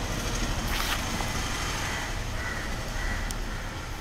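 Steady low rumble of background noise, with a faint click about three seconds in.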